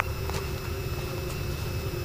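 Steady low rumble of outdoor background noise with a faint constant hum over it and a few soft ticks; no distinct sound event.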